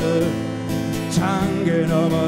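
Live band music led by strummed acoustic guitar, with wavering melody notes held over a full, steady accompaniment.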